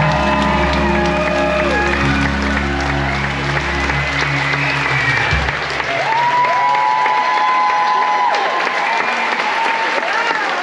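A theatre audience applauding and cheering, with the band's closing chord held underneath until it stops about five and a half seconds in. Long, drawn-out high cheers then rise above the applause.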